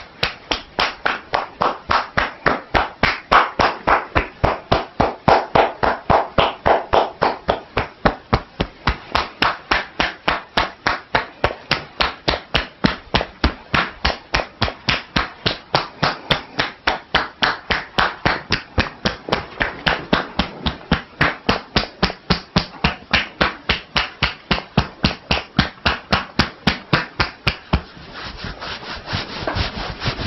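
Two-handed percussive head massage: the palms are held loosely together and chop down on the top of a seated woman's bowed head, the hands clapping against each other on each stroke in a fast, even rhythm. Near the end the strikes stop and give way to softer rubbing as the hands move down to the neck.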